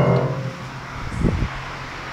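Notes on an outdoor street piano ringing out and fading over the first half-second. A short low thump follows about a second later, with traffic in the background.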